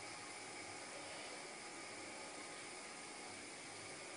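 Steady faint hiss with no other sound: the recording's background noise.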